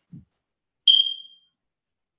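A smoke alarm giving a single short, high-pitched chirp about a second in, fading away within half a second.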